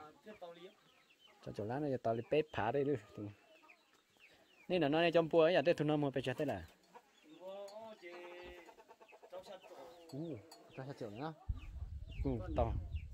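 Chickens clucking and calling in short bouts, with people's voices among them.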